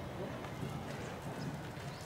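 Faint murmur of voices from people standing close by, over a low outdoor rumble.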